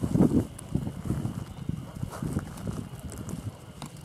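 Footsteps crossing a rusty steel plate laid over a ditch as a footbridge: a run of irregular knocks as the plate is walked on.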